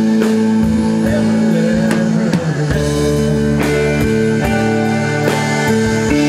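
Live rock band playing through the PA: electric guitars over a steady drum beat, with a bent, wavering note about a second and a half in.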